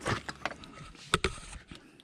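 Handling noise: a few light knocks and clicks, the sharpest a little past the middle, with faint rustling as hands and camera move against the trailer.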